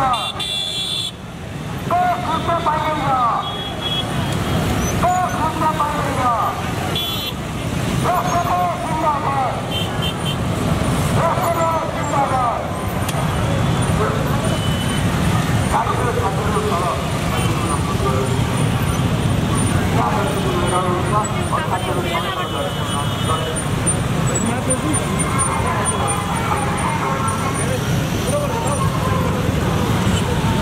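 Many motorcycle engines running together in a steady low drone, with horns tooting now and then. Over it a crowd shouts slogans, one phrase about every second and a half through the first half, then looser shouting.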